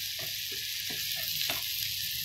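Sliced mushrooms sizzling in melted margarine in a non-stick frying pan, a steady hiss, while being stirred, with a few short scrapes against the pan.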